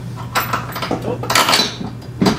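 Metal clinking and scraping of a steel bolt and hardware against a trailer hitch frame as a stuck bolt is worked into its mounting hole, with a few sharp clinks, the loudest about a second and a half in. A steady low hum runs underneath.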